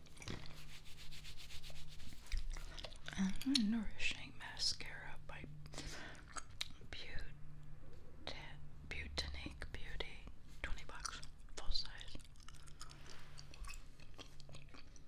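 Bubble gum chewed close to a binaural microphone: wet, crackly mouth sounds and small clicks, mixed with soft rubbing.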